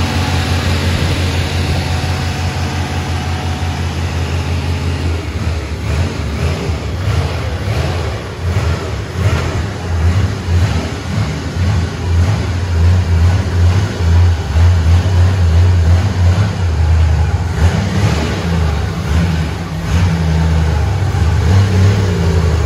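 A 1983 Chevrolet Camaro's engine running with the hood up, idling steadily for about the first five seconds. After that it runs rougher and louder, rising and falling.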